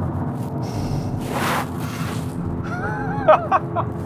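Lamborghini Urus's 4.0-litre twin-turbo V8 droning steadily at motorway speed, with music over it.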